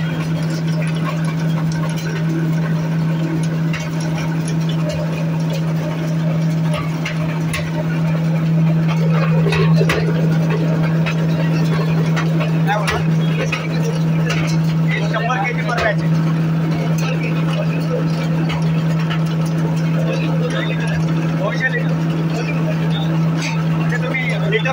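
Coconut husk shredder running steadily with a constant low drone while coir fibre is fed into its hopper, with scattered crackling over the drone.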